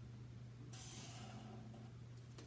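Sharpie marker drawn along a ruler across paper: a faint hiss lasting just over a second, starting well under a second in, over a low steady hum.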